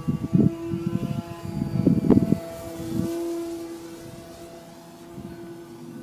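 A radio-controlled Slick 540 aerobatic model plane flying at a distance, its motor and propeller giving a steady droning tone that grows fainter about four seconds in. Irregular low rumbles from wind buffeting the microphone are the loudest sound in the first two and a half seconds.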